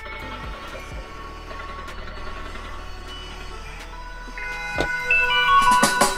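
Quiet car cabin with a low steady hum, and music coming in and growing louder about four and a half seconds in.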